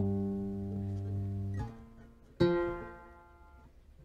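Fretless three-string cigar box guitar: a low plucked note, the tonic (do), rings and fades, then is damped and stops short about a second and a half in; about a second later a single higher note is plucked and fades out.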